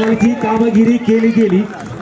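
A man talking in running match commentary. It breaks off briefly near the end.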